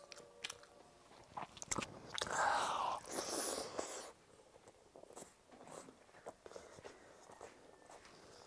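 Close-miked eating of water-soaked rice (panta bhat) by hand: wet mouth clicks and chewing, with a louder noisy stretch from about two to four seconds in.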